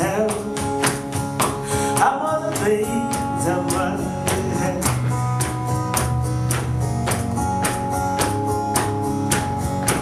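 Live acoustic band music: a strummed acoustic guitar and a cajón keep a steady, driving beat of sharp percussive hits, with some singing.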